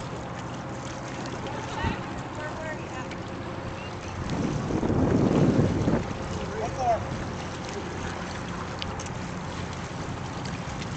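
Outdoor lakeside ambience with faint distant voices; about four seconds in, wind buffets the microphone for around two seconds, a low rumbling rush that is the loudest thing heard.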